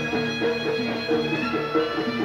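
Traditional Javanese jaranan accompaniment music: a melody of held notes stepping up and down in a repeating phrase, with percussion.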